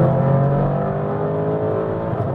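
Lamborghini Urus's twin-turbo 4.0-litre V8, fitted with aftermarket downpipes, heard from inside the cabin under acceleration at motorway speed. Its note climbs steadily in pitch.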